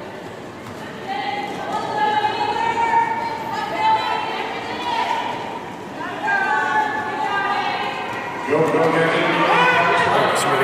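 Voices in a large, echoing hall: long, drawn-out, high-pitched calls or shouts, then a lower man's voice from near the end.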